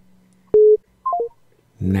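Telephone line tones as a phone call drops: one short low beep with a click, then a quick three-note falling chime, the sign that the call has been cut off.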